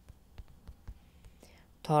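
Several light taps on a phone's touchscreen keyboard while a word is typed, a few taps a second, with a soft breathy hiss in the middle.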